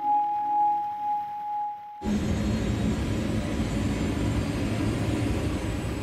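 A single sustained musical note held for about two seconds, then a sudden cut to the steady engine drone of a small aircraft heard from inside the cockpit.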